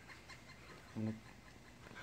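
A man's voice saying a short word about halfway through; otherwise quiet room tone.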